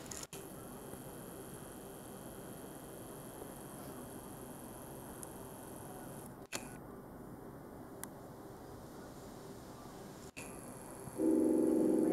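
Steady low room hum of the MRI control room, broken by three brief gaps. About a second before the end, a loud steady electrical buzz starts: the upright MRI scanner's gradient coils being driven while it calibrates.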